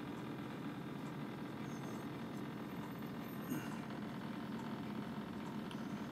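Quiet steady room hiss with a couple of faint handling noises, about two seconds and three and a half seconds in.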